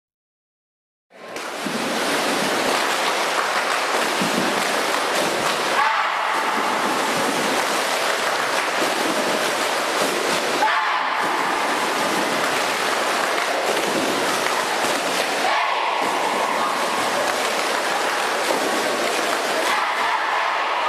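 Many swimmers splashing the water hard in a tight team huddle, a dense, continuous rush of splashing with shouting voices mixed in. It starts about a second in, after silence, and breaks off briefly a few times.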